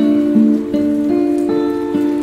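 Steel-string acoustic guitar with a capo at the fifth fret, fingerpicked in a slow instrumental passage: single notes plucked about every half second, ringing over held lower strings.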